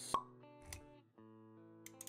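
Background music of held tones with animation sound effects: a sharp pop just after the start, a soft low thud a little later, and a run of quick clicks beginning near the end.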